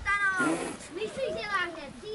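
Voices meowing like cats: several high, mostly falling calls, one after another and partly overlapping.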